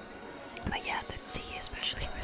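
A woman whispering softly, with no clear words, starting about half a second in.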